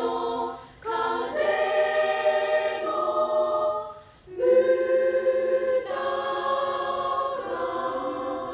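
Unaccompanied three-part choir of junior-high girls singing held chords, with two short breaks between phrases about one second and four seconds in.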